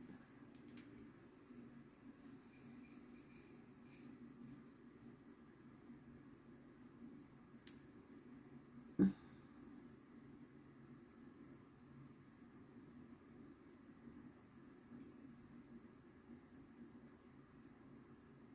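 Near silence: faint steady room hum, with a faint click and then, about nine seconds in, a single short knock.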